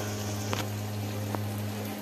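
Spinach and egg bubbling as they cook in a pan, with a couple of light pops, over a steady low hum.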